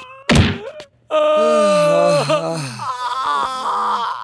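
A single hard punch sound effect, then a man's long cry of pain that falls in pitch, followed by shorter pained sounds.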